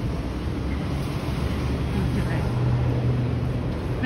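Street traffic noise: a motor vehicle's engine makes a low hum that grows louder through the second half, over steady road rumble.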